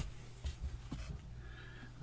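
Quiet room tone with a steady low hum and a few faint, brief low bumps.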